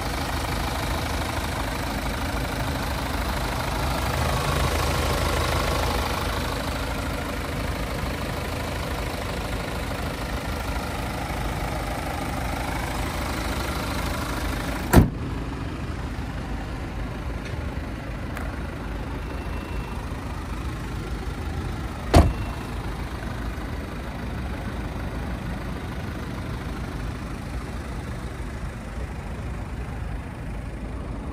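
BMW 220d's 2.0-litre four-cylinder diesel idling steadily. About halfway through comes a single sharp thump as the bonnet is shut, and the idle sounds more muffled after it. A second sharp thump follows about seven seconds later.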